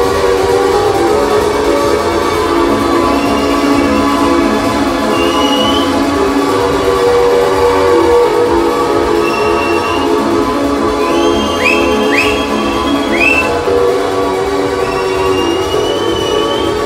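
Music from a DJ set playing loud over a festival PA, steady throughout, with several short rising whistle-like sweeps a little past the middle.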